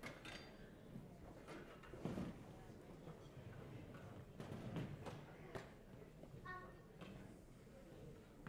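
Quiet concert-hall changeover between bands: scattered knocks and clicks of chairs, stands and instruments being handled on stage, under faint murmuring, with a brief pitched squeak about six and a half seconds in.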